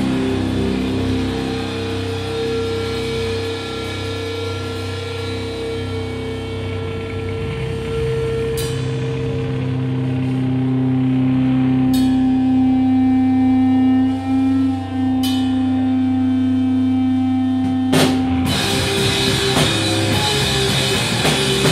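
Live rock band in a small room playing a slow, sparse passage: electric guitar and bass holding long sustained notes that change every few seconds, with a few single drum-and-cymbal hits spaced several seconds apart. Near the end the full band comes back in with drums playing hard.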